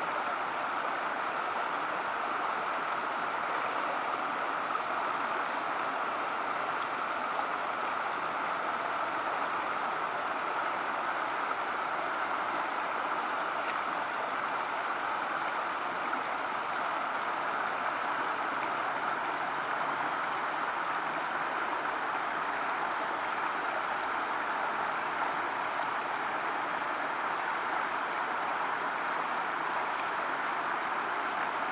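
Creek water running steadily over a small low weir, a constant rushing with no breaks.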